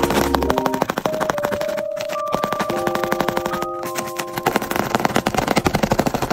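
Quick, dense crackling and crinkling of tape-covered paper squishy toys being handled and shifted around, over light background music.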